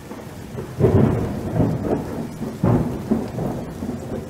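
A thunder-like rumbling sound effect: a dense, noisy rumble that rolls in several loud swells, the strongest about a second in and again near three seconds.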